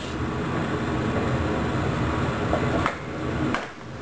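Steady room background noise, an even fan-like hum and hiss, dropping away a little before the end.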